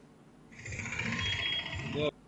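Street traffic noise with motorcycle engines. It comes in about half a second in and is cut off abruptly at the end.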